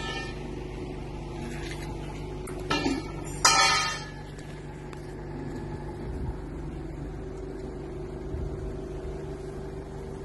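Ravaglioli tractor tyre changer running with a steady low hum. About three seconds in, two short, loud bursts of noise break in; the second is the loudest and fades out over about half a second.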